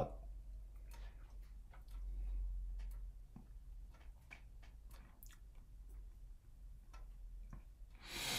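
Faint, scattered mouth clicks and lip smacks from someone tasting a sip of bourbon, working it around the mouth. Under them a steady low hum swells briefly about two seconds in.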